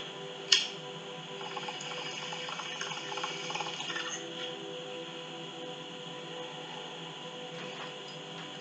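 A sharp click about half a second in, then about three seconds of water bubbling in a bong as cannabis smoke is drawn through it, over quiet background music.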